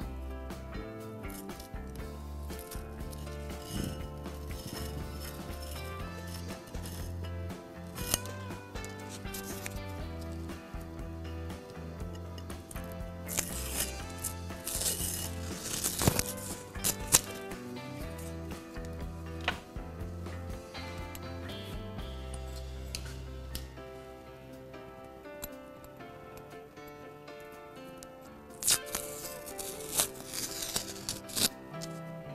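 Background instrumental music, with short rasping bursts of masking tape being peeled off a painted glass jar, the longest run about halfway through.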